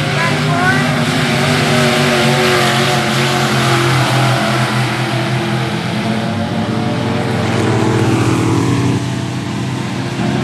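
Dirt-track modified race cars running hard on the track with their V8 engines at high revs, the note rising and falling as they go through the turns. Their sound drops in pitch and gets a little quieter near the end as they move away.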